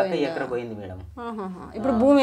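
Speech only: people talking in a conversation, with a brief pause about a second in.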